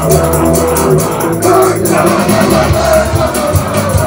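Live rock band playing loud in an instrumental passage with no vocals: electric guitars carrying held, sustained notes over the bass.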